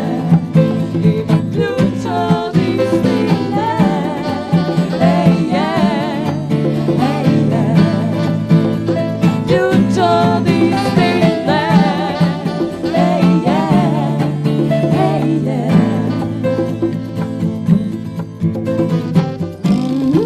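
A vocal group singing together, several voices with vibrato, over a live band with piano, acoustic guitar and percussion.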